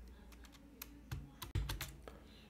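Quick clicks of computer keys at the desk: a few scattered ones at first, then a tight run of four or five in the second second.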